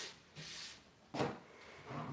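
A hand rubbing across a sanded bare-wood tabletop to brush off sanding dust: two short swishes, the second, about a second in, louder and sharper.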